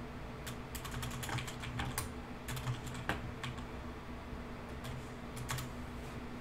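Quiet typing on a computer keyboard: irregular key clicks, a few a second, with short pauses between runs.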